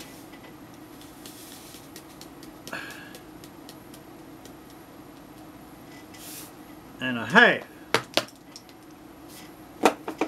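Light clicks and taps of a measuring spoon and a salt container as salt is measured out over a tub of flour, under a steady low hum. About seven seconds in, a short wordless vocal sound that dips and rises in pitch is the loudest thing, followed by a few sharp clicks.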